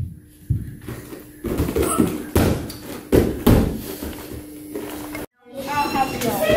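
A child tumbling on a dance-studio floor, with about half a dozen dull thuds of feet and body landing over the first three and a half seconds and a low steady hum underneath.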